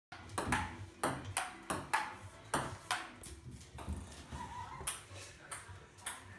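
Table tennis ball bouncing on the table and being tapped with a paddle: a string of sharp, irregular clicks, quick in the first three seconds, then fewer and farther apart.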